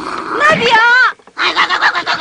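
A loud cry that rises and then wavers in pitch, followed after a short gap by a rapid stuttering, pulsing vocal sound, with a whinny-like character.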